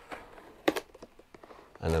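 A few short clicks and rustles of hands peeling back a label on a hard case's foam insert, the sharpest about two-thirds of a second in.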